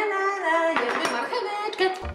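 Background music with a sung melody, with a short clatter about a second in as a takeaway food box is opened on the table.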